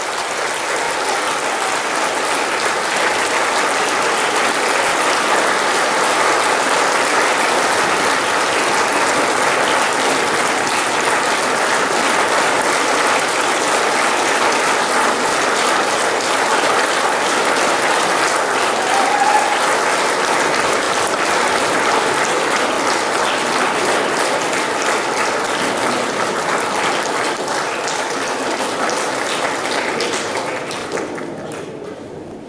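Audience applauding steadily, a dense patter of many people clapping that begins right as the music ends and eases off slightly near the end.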